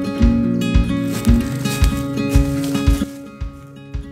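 Acoustic folk instrumental background music: acoustic guitar over a steady beat of about two a second, stopping about three seconds in.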